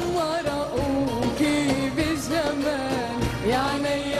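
A woman singing an Arabic song into a microphone, her melody wavering and ornamented, over band accompaniment with a steady beat.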